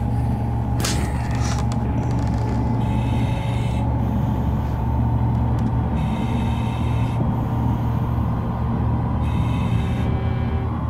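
Steady low rumbling drone with a hiss that comes in about every three seconds, as gas is drawn from a cylinder through a tube held to the face. There is a short sharp noise just under a second in.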